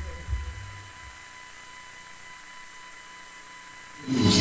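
A brief low rumble fades out within the first second. After it comes a steady faint electrical hiss and hum with thin, steady high-pitched whines running underneath: line noise in a silent gap of the broadcast.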